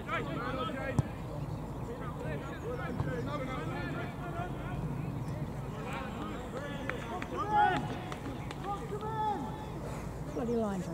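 Footballers' voices calling and shouting across a grass pitch, distant and indistinct, with a single sharp knock about a second in and one louder shout a little past the middle.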